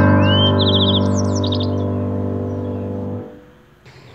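Intro background music: a held piano chord with bird chirps over it in the first second and a half, fading out a little after three seconds in.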